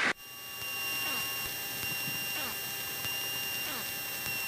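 Steady electrical hum and high-pitched whine on a light aircraft's intercom audio line, with a few faint falling sweeps; the engine itself is barely heard.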